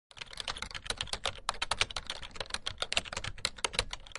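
A rapid, irregular run of sharp clicks, about ten a second, like fast typing.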